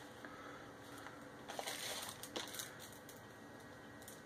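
Faint rustling and crinkling of a candy bar wrapper being opened by hand, with a few soft crackles in the middle.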